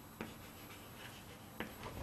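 Faint sounds of writing or drawing on a surface in a small room: a few short, sharp taps, one about a fifth of a second in and two close together near the end.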